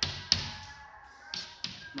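A single sharp tap about a third of a second in, over faint steady tones like soft background music, with a few short hissy bursts.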